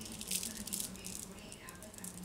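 Faint, irregular rattling clicks over a low steady hum.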